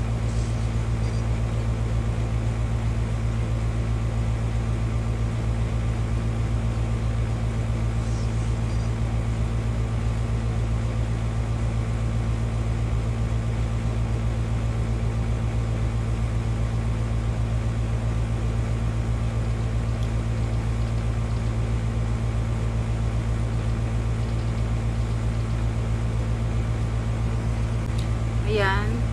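A steady low hum with an even hiss behind it, unchanging in pitch and level.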